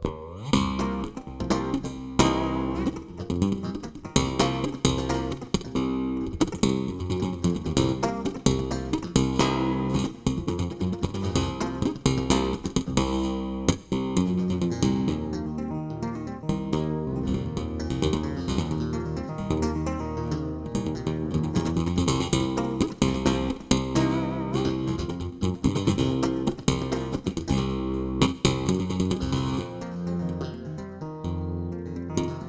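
Solo electric bass guitar played live through an amplifier: a continuous stream of quick plucked notes and chords.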